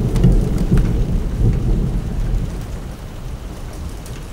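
Low rumble of thunder with rain, fading away gradually.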